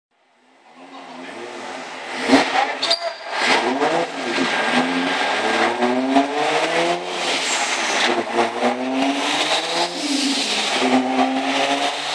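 Turbocharged Toyota Supra inline-six under full throttle on a chassis dyno, its note climbing in pitch and dropping back several times as it shifts up through the gears. A sharp crack about two seconds in.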